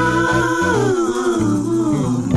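Music: a long wordless vocal note sliding slowly down in pitch over a steady bass line.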